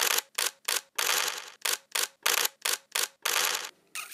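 A sound effect of quick, sharp mechanical clicks, about three a second, with two longer rattling bursts, one about a second in and one near the end.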